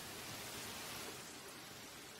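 Steady rain falling, an even hiss without breaks.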